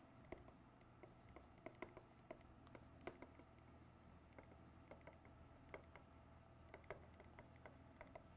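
Near silence broken by faint, irregular small taps and scratches of a pen writing words, over a low steady room hum.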